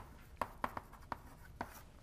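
Chalk writing on a blackboard: about six short, sharp taps and strokes at an irregular pace, as a phrase is written.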